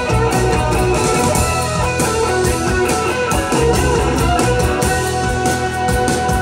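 A live rock band playing an instrumental passage without vocals: guitars ringing out over bass and steady drum hits, heard loud from within the crowd.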